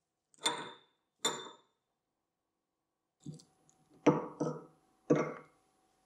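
Steel parts of a lathe headstock clinking and knocking as it is taken apart. There are two short ringing metal clinks in the first second and a half, then a run of heavier knocks from about three seconds in.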